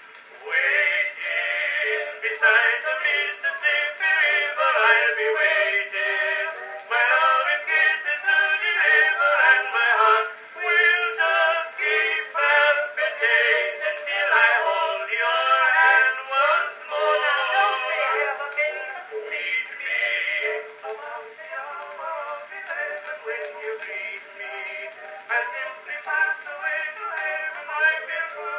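Edison Blue Amberol cylinder record playing on a horn phonograph: an early acoustic recording of singing, thin and narrow in tone with no deep bass. The music dips briefly at the start, then runs on.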